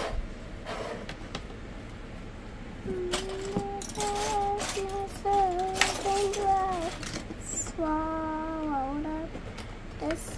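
A child humming a little tune in held, stepping notes, with scattered clicks and clatter of plastic Lego bricks being pressed together and rummaged in a drawer.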